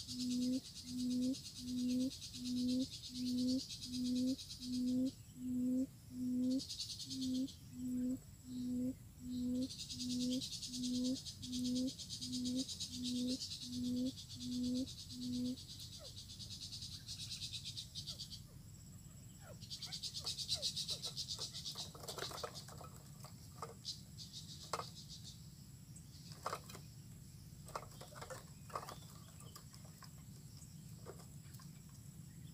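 A quail's low hooting call, one short note a bit more than once a second, repeated about twenty times and stopping about halfway through. Insects buzz on and off, and light rustling clicks in dry grass follow in the second half.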